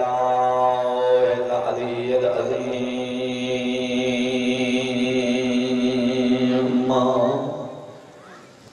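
A man's voice chanting a drawn-out melodic recitation into a microphone, holding long steady notes with one shift in pitch about two seconds in, then fading out near the end.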